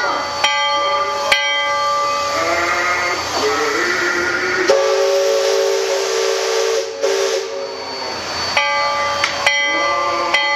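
A paddle-wheel riverboat's steam whistle sounds one steady chord for about four seconds from about halfway in, with a hiss of steam around it. Short musical notes are heard before and after it.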